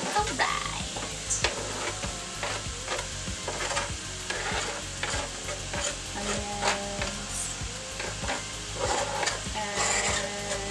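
Ground beef and vegetables sizzling in a skillet in the beef's own fat, with scattered clicks and scrapes as chopped onion is pushed off a plastic cutting board into the pan with a knife.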